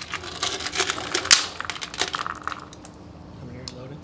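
Small clicks and rattles from an Archon Type B polymer-frame pistol being handled and turned over in the hands, with one sharper click a little over a second in.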